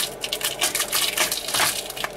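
Rapid small clicks and crackles of a 3D-printed flexible PLA shoe being gripped and flexed by hand.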